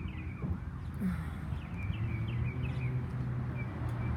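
Birds chirping in short repeated calls over a steady low rumble.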